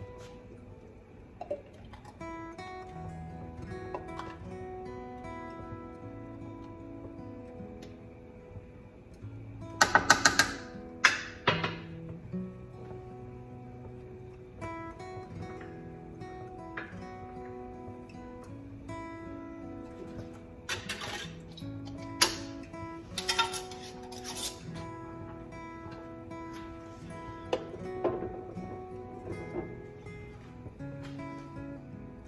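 Soft acoustic guitar music plays throughout. Sharp clinks and knocks of glass jars and a metal ladle against a steel pot come in two clusters, about ten seconds in and again past twenty seconds, and are the loudest sounds.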